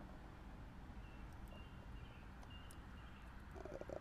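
Near silence: faint low rumble with a few faint, short high chirps, and a fast pulsing sound that starts near the end.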